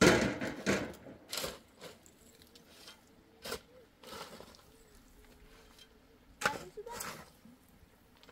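A shovel blade striking and scraping into dry, stony earth: a loud strike right at the start, a few more in the first two seconds, then one at about three and a half seconds and two more near the end.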